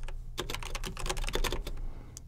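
Typing on a computer keyboard: a quick, irregular run of keystroke clicks.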